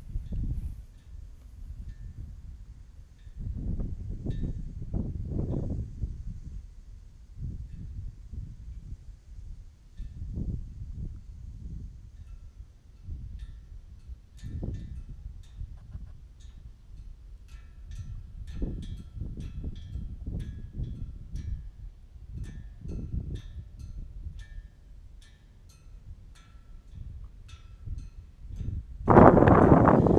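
Wind buffeting an outdoor camera microphone in irregular low gusts, with many faint short high-pitched ticks in the second half.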